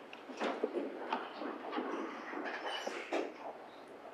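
Faint, irregular shuffling and soft knocks of someone walking up to a podium and settling at its microphone, over the low hum of a meeting room.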